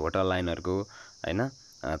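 A man speaking in narration, with short pauses, over a steady high-pitched hiss in the background.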